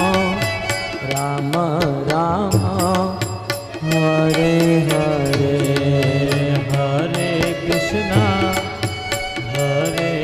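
Devotional Krishna bhajan music: a melodic line that slides and wavers between notes, over a low steady note and a quick, even beat.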